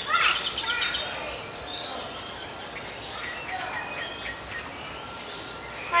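Small birds chirping and calling, with a loud flurry of quick chirps and a rising call in the first second, then scattered chirps.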